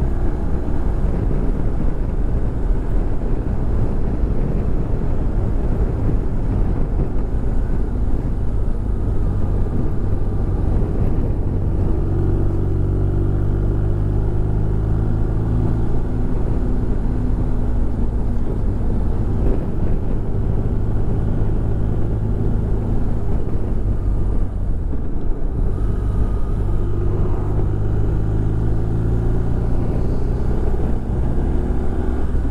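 Motorcycle engine running steadily at road speed, a low hum under the rush of wind and road noise; the engine note comes through more clearly from about twelve seconds in and again near the end.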